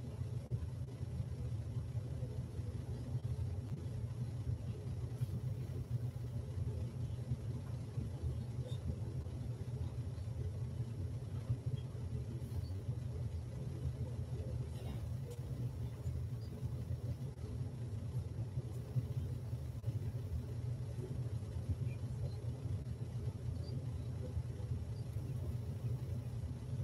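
Steady low rumble of room background noise, with no speech or music.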